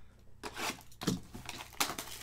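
Plastic shrink wrap on a sealed trading-card box crinkling and tearing as it is handled and stripped off. The sound comes in irregular crackling bursts with a few sharp clicks, starting about half a second in.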